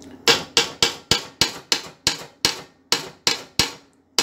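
Metal paint-mixer paddle knocking repeatedly against the rim and side of a large metal cooking pot, sharp ringing knocks about three times a second.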